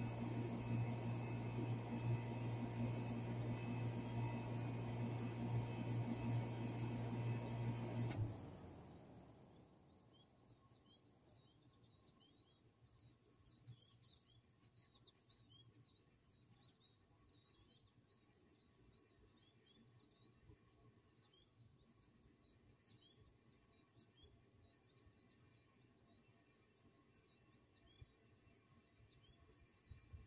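Miller package air-conditioning unit running with a steady low hum, its condenser fan motor newly replaced. About eight seconds in it shuts off with a click and the hum dies away, leaving faint bird chirps.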